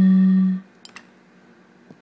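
One steady held musical note ends abruptly about half a second in. Then there are two soft clicks in quick succession and a faint click near the end.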